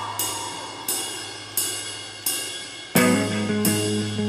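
Rock band playing live: a cymbal struck on a steady beat, about every three-quarters of a second, over a held bass note, with no singing. About three seconds in, the full band comes back in much louder with chords.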